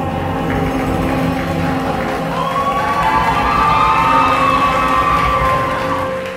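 Male vocalist singing over piano and band accompaniment, with a long note held through the second half.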